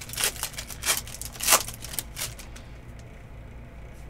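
Foil wrapper of an Upper Deck Ultimate Collection hockey card pack crinkling as it is torn open by hand, a handful of short crackles in the first two seconds, then quieter.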